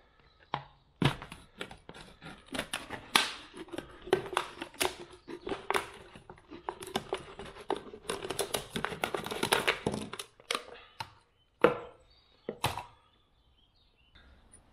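Pocket knife blade cutting round a thin plastic drinks bottle to take its bottom off: irregular crackling and crinkling of the plastic for about nine seconds, with a faint squeak under it in the middle. A few separate knocks follow near the end.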